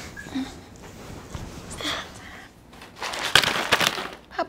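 Paper bag crinkling and rustling loudly in the last second, after a stretch of faint, scattered small sounds.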